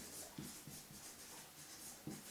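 Marker writing on a board: a series of faint, short strokes and scratches as a word is written out letter by letter.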